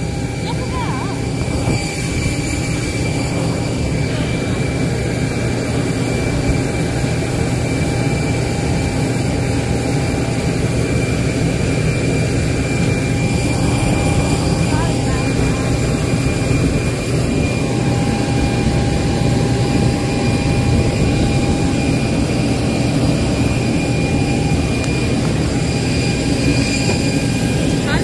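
Steady jet-aircraft noise: an even rumble with several high whining tones held over it, at a constant loud level.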